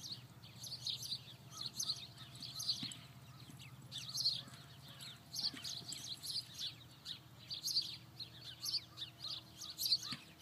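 A flock of small birds chirping and twittering continuously, many short quick chirps a second, over a low steady hum.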